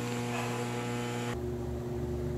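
Steady electrical hum made of several fixed tones, which changes in character about a second and a half in.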